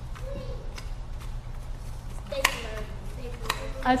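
A stapler pressed shut a few times, each press a sharp clack, the loudest about two and a half seconds in.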